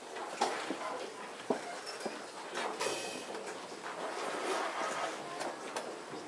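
Brass band players readying their instruments between pieces: scattered light clicks and knocks of instruments, stands and chairs, over faint room rustle, with one sharper knock about one and a half seconds in.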